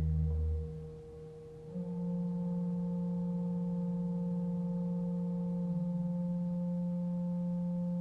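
Organ holding soft, steady sustained notes. Low pedal tones stop about half a second in, and after a brief softer moment a new quiet chord comes in and is held, one of its notes dropping out near the end.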